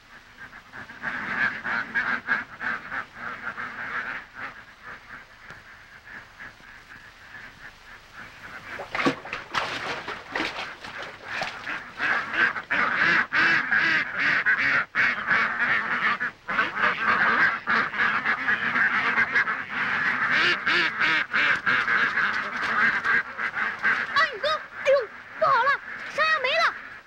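A large flock of white domestic ducks quacking together in a dense, continuous din. It is quieter for a few seconds, then grows louder and fuller from about nine seconds in.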